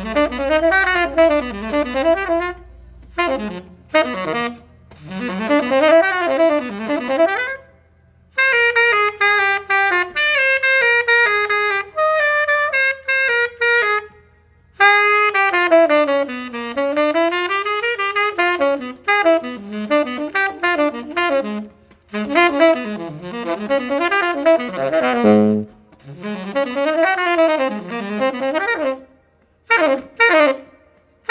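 Tenor saxophone playing a jazz solo: quick runs and swooping phrases that rise and fall, broken by a few short pauses.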